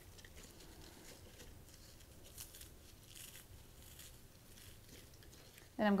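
Round crackers being crushed by hand into a glass bowl: faint, irregular crunching and crackling as they break into crumbs.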